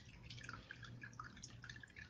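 Near silence: faint room tone with a low hum and scattered, irregular faint ticks.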